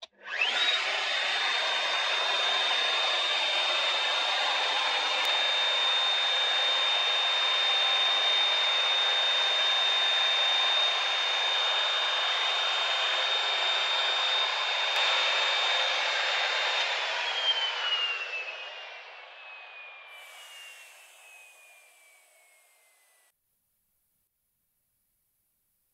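Plunge router switched on and running at full speed with a steady high whine while it cuts a tenon in wood. After about 17 seconds it is switched off and winds down, the whine falling in pitch until it stops.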